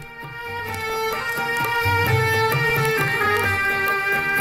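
Live instrumental introduction to a Hindi film song playing from a vinyl record: held melody notes over low plucked bass notes, swelling in over the first second.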